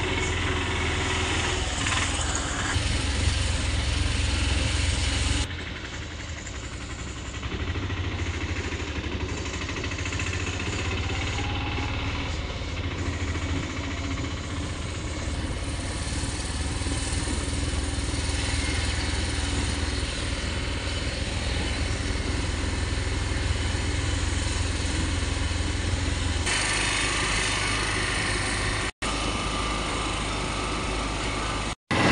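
Auto-rickshaw engine running as the rickshaw drives along the road, heard from inside with road and wind noise. The sound drops and changes abruptly about five seconds in, shifts again near the end, and cuts out briefly just before the end.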